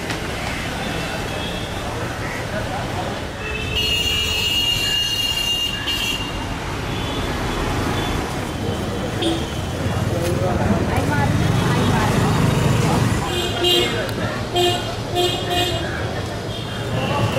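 Busy city street traffic running with a steady rumble, a long car horn blast about four seconds in and several short honks near the end, with people's voices mixed in.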